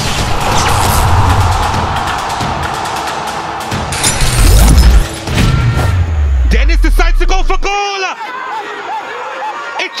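Broadcast intro sting: dense sound-design music with a crash and a deep bass boom about four and a half seconds in, the bass cutting off near eight seconds. From about six and a half seconds a football commentator's excited raised voice comes in.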